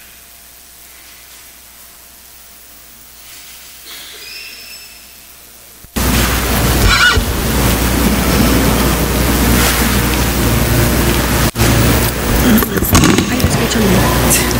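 Faint room tone, then about six seconds in a sudden loud, steady rushing noise with a low electrical hum, typical of a live microphone or PA channel being switched on and handled. It cuts out briefly once near the end.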